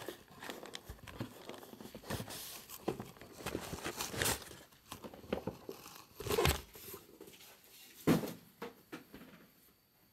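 Plastic shrink wrap and cardboard being crinkled and torn by hand as sealed trading-card boxes are unwrapped, in irregular rustling bursts. The loudest come about six and eight seconds in.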